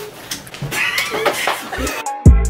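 High-pitched, excited women's voices with squealing about a second in, and a brief low thump near the end.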